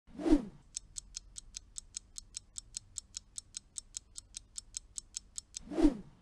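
Quiz countdown-timer sound effect: a short whoosh, then steady clock-like ticks about five a second, ending in a rising whoosh as the guessing time runs out.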